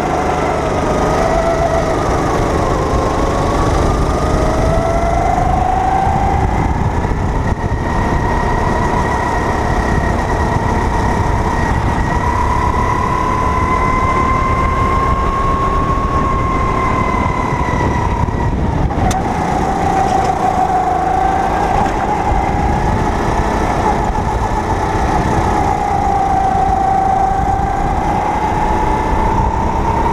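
Onboard sound of a Sodikart go-kart's engine at speed, its note rising and falling with the revs as the kart runs through the corners. The note climbs steadily for a long stretch and drops sharply about two-thirds through as the kart slows for a turn, then wavers up and down again over a constant low rumble.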